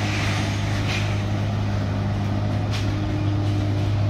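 A vehicle engine running at a steady idle, a low continuous drone, with a couple of faint knocks over it.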